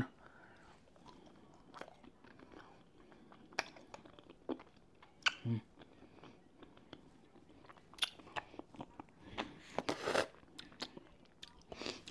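A person biting into and chewing a Takis Buckin' Ranch rolled corn tortilla chip: scattered sharp crunches with quieter chewing between them. A short "mm" comes about five seconds in.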